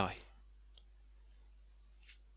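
The last spoken word fades out right at the start, then near silence: room tone, broken once by a faint short click a little under a second in.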